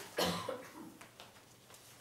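A person coughs once, shortly after the start, followed by faint small clicks.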